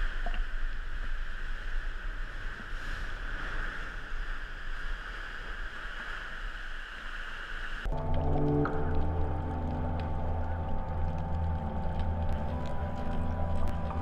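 Steady rushing noise of churning, foaming seawater in a sea cave. It cuts off suddenly about eight seconds in, when music with long held notes begins.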